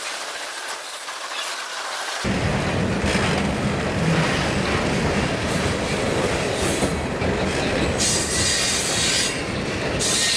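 Freight cars rolling past close by, steel wheels rumbling and clacking over the rail. The rumble turns louder and deeper about two seconds in, and a high-pitched wheel squeal comes in near the end.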